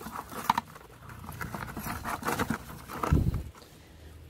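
Rustling and light knocking of a wire-mesh fish trap being shaken out over a plastic bucket, with a dull thump about three seconds in as the catch drops into the bucket.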